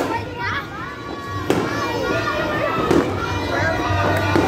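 Fireworks going off over a busy street: two sharp bangs, about a second and a half in and again near three seconds, over a crowd of people and children talking and calling out.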